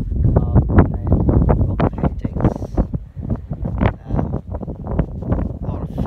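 Wind buffeting a phone's microphone: irregular low rumbling gusts, heaviest in the first couple of seconds.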